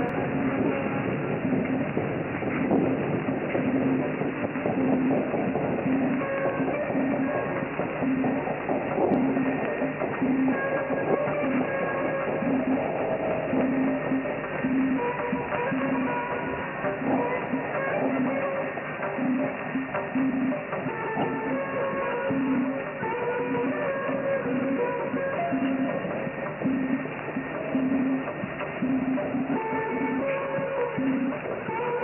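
Music from a mediumwave AM broadcast on 783 kHz, received on a Perseus SDR in synchronous AM, its audio cut off above about 3 kHz. It runs continuously, with a low note repeating about every 0.7 seconds under higher melody notes.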